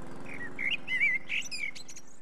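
Small birds chirping and twittering in quick, short, warbling calls, over a faint low steady tone.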